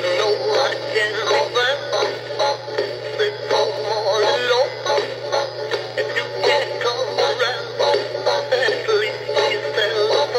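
Big Mouth Billy Bass animatronic singing fish playing a song with singing through its small built-in speaker, thin and without bass, over a steady low hum.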